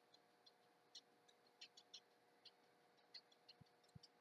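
Near silence: room tone with a faint steady hum and a few faint, scattered ticks.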